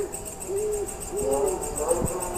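A few low hooting calls over a steady, rapid high-pitched chirping, like an owl and crickets.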